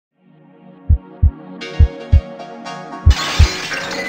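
Logo-intro sound design: a sustained synth drone fades in under three pairs of deep bass thumps, like a heartbeat. About three seconds in, a sudden bright noisy burst swells up as the logo breaks out.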